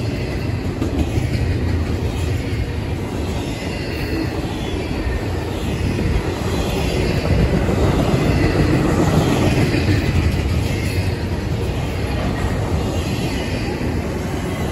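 Double-stack intermodal container cars rolling past close by: a steady, continuous rumble of steel wheels on rail, with a faint high wheel squeal running over it.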